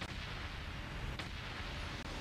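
Movie-trailer sound effects: a dense, steady rumble of noise, heaviest in the bass, with a sharp crack about a second in.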